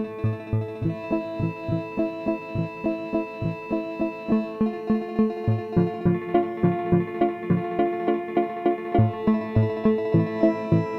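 Acoustic guitar picked in a steady run of notes, about three to four a second, played through a Hologram Microcosm granular delay and looper pedal, with held tones ringing on under the picking. The notes come a little faster and louder about halfway through.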